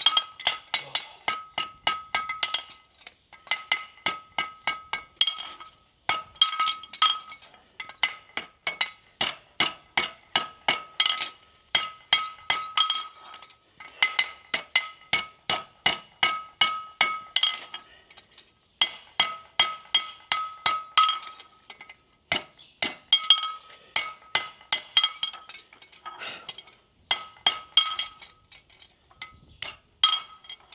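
Farrier's hammer striking a horseshoe on an anvil in quick runs of blows, several a second, each leaving a bright metallic ring, with short pauses between runs.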